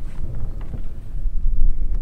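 Wind buffeting the camera microphone: a loud, low rumble that swells and dips with the gusts.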